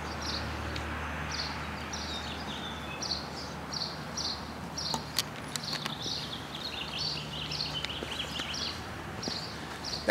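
Outdoor ambience with a small bird chirping over and over, short high notes about two a second, some of them sliding down in pitch in the second half. Under it runs a low steady hum, with a few faint clicks.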